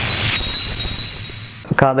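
The tail of a film song: a crash with a thin high ring that fades out over about a second and a half. A man starts speaking near the end.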